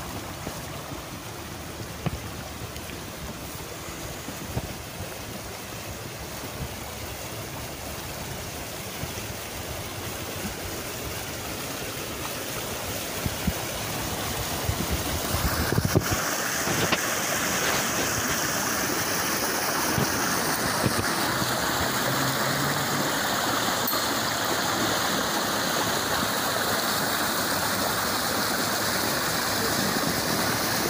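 A storm-swollen creek running fast over rocks with a steady rush of water. About halfway through it grows louder and brighter, as the sound of the foaming riffle comes close.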